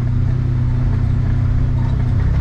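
Can-Am Defender Limited side-by-side's engine running steadily, heard from inside its enclosed cab as an even, low drone.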